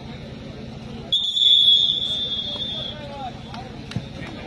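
A referee's whistle gives one long, steady blast of just under two seconds, starting about a second in, over crowd noise. In kabaddi this marks the end of a raid in which the raider has been tackled.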